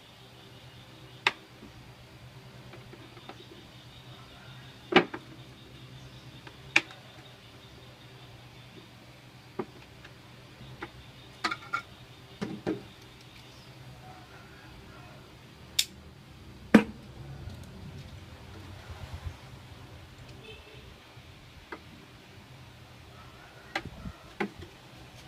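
Hard plastic clicking and knocking as a clear plastic jar is handled and worked with small hand tools: about ten sharp, separate clicks at irregular intervals, the loudest about five seconds in and again near two-thirds of the way through.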